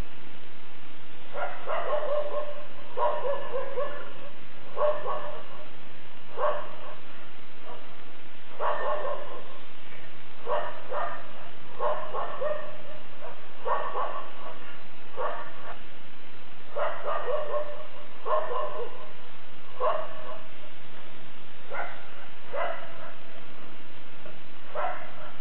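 A dog barking over and over, about one bark a second in irregular runs.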